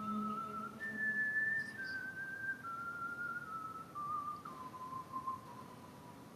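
A whistled melody: one pure tone stepping down through about six notes and ending on a long held note that fades away, closing the song.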